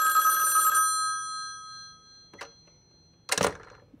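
A telephone bell ringing, cutting off about a second in and then dying away over the next second. A faint click follows.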